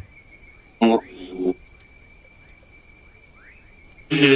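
Night insects, crickets, keeping up a steady high trill at two pitches, with a few faint chirps. A short voice-like burst breaks in about a second in.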